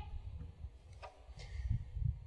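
Uneven low rumble of wind buffeting the microphone, with one sharp click about a second in; the guitar is silent.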